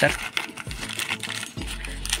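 A paper packet of small fishing hooks being handled and opened by hand: a run of light paper rustles and small clicks as the envelope is unfolded and the glassine inner packet is drawn out.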